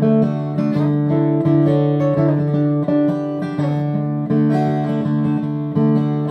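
Steel-string dreadnought acoustic guitar strumming and picking chords in a steady rhythm, with no singing.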